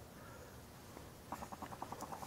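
Near silence, then a little past halfway a run of faint rapid clicks, about ten a second.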